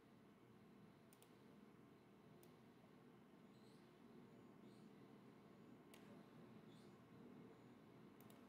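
Near silence: room tone with a few faint computer-mouse clicks scattered through it.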